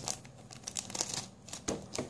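Scissors cutting open a thin black plastic blind bag, the wrapper crinkling as it is handled: a few faint, scattered crackles and snips, a little louder near the end.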